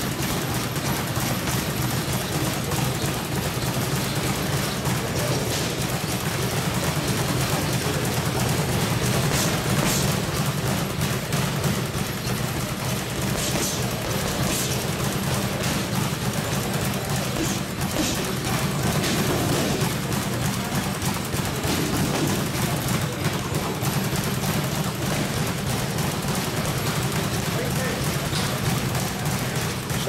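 Boxing gloves hitting a heavy punching bag in rapid, continuous combinations of punches.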